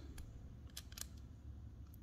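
A handful of faint, sharp clicks, mostly bunched just before a second in, from a metal screwdriver tip touching the MOSFETs on a Bionx motor controller circuit board, over quiet room tone.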